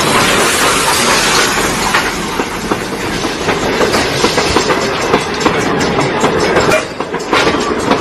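Life-size Thomas the Tank Engine steam locomotive and its coaches running by on the track, the wheels clattering over the rails.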